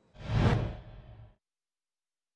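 A whoosh sound effect for an on-screen graphic transition, with a deep rumble underneath. It swells to a peak about half a second in and fades out about a second later.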